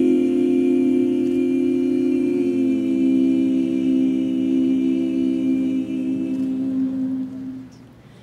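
Women's barbershop quartet singing a cappella, holding one long sustained chord in close harmony that dies away near the end.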